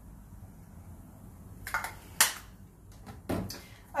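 Two short spritzes from a pump-spray fragrance mist bottle about two seconds in, then a knock near the end as bottles are handled in a plastic basket.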